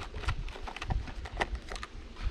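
Thin plastic acetate sheet crackling and rustling as it is handled and fitted over a wooden hive box: a scatter of small sharp clicks over a low rumble.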